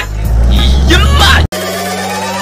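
Deep car engine rumble with a voice over it, cut off suddenly about one and a half seconds in. It is followed by a slowly rising whistling tone over steady low tones.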